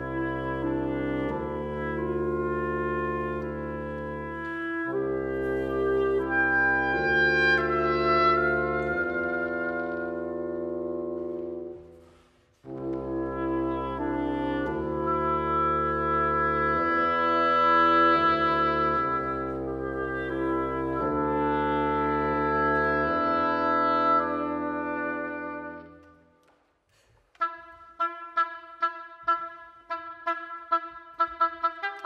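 Reed trio of oboe, clarinet and bassoon playing long held chords over a low bassoon line. The chords break off briefly about twelve seconds in and then resume. They fade away near the end, when the oboe alone takes up a run of short, quickly repeated staccato notes on one pitch.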